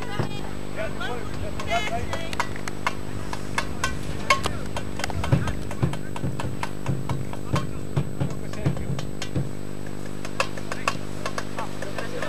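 Scattered voices and short calls over a steady low hum, with frequent sharp clicks and knocks.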